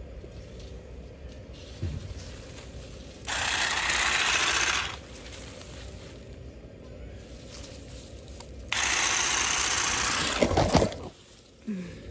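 Cordless electric hedge trimmer running in two bursts of about a second and a half each, about three seconds in and just before nine seconds, its reciprocating blades cutting back lavender stems. A few knocks and rustles of the stems follow near the end.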